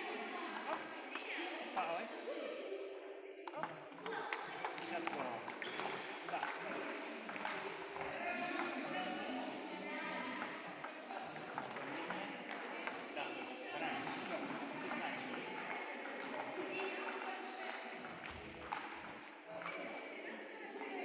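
Table tennis balls clicking off rackets and table tops in quick, irregular rallies, with strikes overlapping from more than one table.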